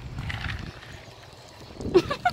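Hens clucking: a quick burst of loud, short calls that starts near the end.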